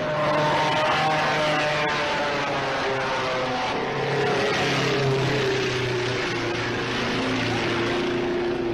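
Engines of several 1.5-litre sports racing cars running at speed, their overlapping notes slowly dropping in pitch in the second half as the cars go by.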